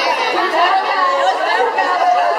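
Many voices talking over one another in a room: continuous group chatter with no single clear speaker.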